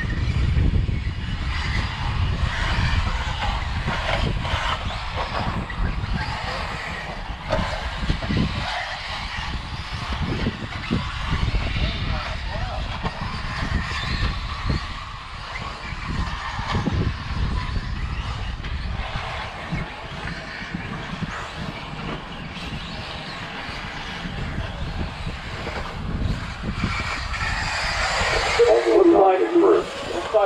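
Electric RC buggies racing around a dirt off-road track, a faint motor and tyre noise heard under a steady low rumble.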